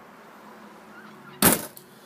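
A single sharp thump or knock about one and a half seconds in, over faint background hiss.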